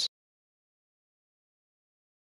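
Digital silence: the tail of a man's voice cuts off at the very start, then there is no sound at all.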